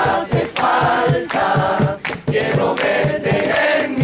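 A group singing a song together to two strummed acoustic guitars, one steel-string and one nylon-string, with hands clapping along to the beat.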